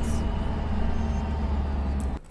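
Ferrari 296's 2.9-litre six-cylinder hybrid engine running steadily as the car drives along, a continuous low rumble.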